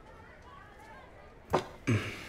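Steel tray with two steel tumblers set down on a table, a short metal clatter about one and a half seconds in, over faint room tone.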